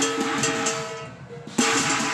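Chinese drum and cymbals playing for a qilin dance: a cymbal crash at the start and another about one and a half seconds in, each ringing on as it fades, over drumbeats and a steady ringing tone.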